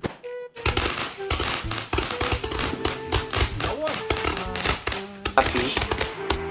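Aerial fireworks bursting, a dense run of sharp pops and crackles starting about half a second in, with a louder burst of cracks near the end. Background music plays underneath.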